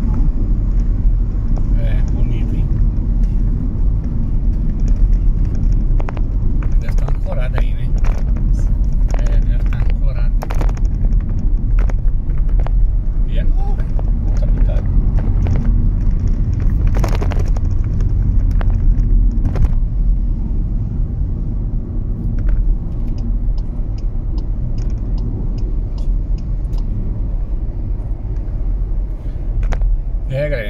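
Steady low rumble of a car's tyres and engine heard from inside the cabin while cruising at highway speed on a bridge. About seventeen seconds in there is a short sharp knock as the wheels cross one of the bridge's expansion joints.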